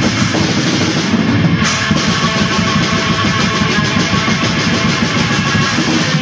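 Raw black metal: a dense, unbroken wall of distorted guitar over fast, steady drumming.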